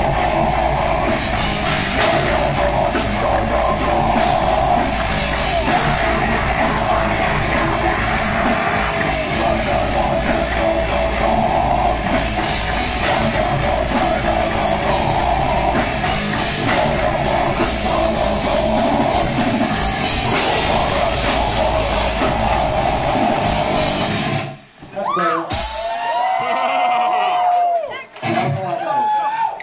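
Brutal death metal band playing live at full volume: heavy distorted guitars over pounding drums. The music stops abruptly near the end, followed by a few seconds of a quieter sound that slides in pitch.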